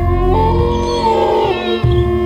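A drawn-out cat meow, starting about half a second in and lasting about a second, over steady low background music.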